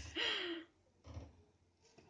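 A woman's short sigh-like voice sound, falling in pitch, about half a second long.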